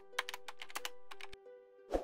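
Keyboard-typing sound effect: a quick run of key clicks for about a second and a half, over soft sustained background music, then one louder click just before the end.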